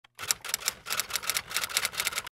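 Typewriter sound effect: rapid key clacks, about eight a second, accompanying on-screen text being typed out.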